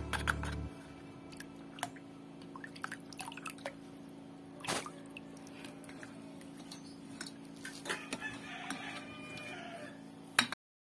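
Plastic spatula stirring coconut milk and water in a metal pot: light, scattered knocks and scrapes against the pot with faint sloshing, one sharper knock about halfway. Short chirpy calls sound faintly in the background near the end.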